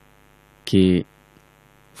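Faint steady electrical hum with many overtones under the pauses, broken once by a man's single short spoken word.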